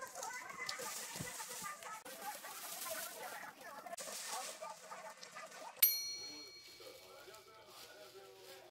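Low, wavering chatter-like sounds, then a sudden bright ding about six seconds in that rings and slowly fades.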